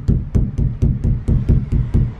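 Rapid knocking on the Toyota Hiace's sheet-metal roof panels, about four dull knocks a second, the metal damped by stuck-on sound-deadening mats; a test of the soundproofing, which sounds much, much better.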